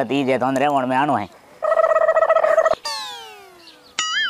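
A man's drawn-out voice, then added comedy sound effects: a steady buzzing tone lasting about a second, followed by a falling whistle-like glide that fades away over the last second.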